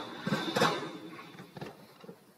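BMX pegs grinding down a steel handrail: a scraping rasp with a faint ringing tone through the first second, then a couple of sharp knocks about a second and a half in as the bike lands.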